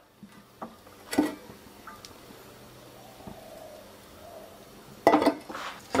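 Light clacks and clinks of kitchenware around a nonstick frying pan over a quiet background, one sharp clack about a second in and a louder clatter near the end.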